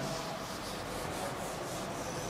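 A whiteboard eraser rubbing back and forth across a whiteboard, wiping off marker writing in quick strokes, about three a second.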